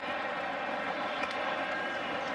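Steady roar of a large stadium crowd as a football offense sets up at the line for the snap.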